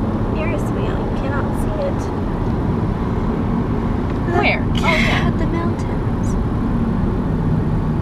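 Steady low rumble of road and engine noise inside a moving car's cabin, with a brief burst of voice about halfway through.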